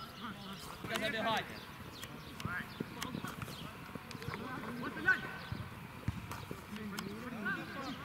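Football players shouting across a grass pitch, over scattered thuds of ball kicks and running feet. A sharp knock about five seconds in is the loudest sound.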